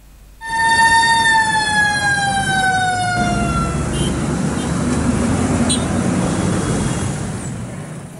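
An emergency vehicle's siren sounding one long wail that slowly falls in pitch and fades out about three and a half seconds in. It sits over a steady din of street traffic.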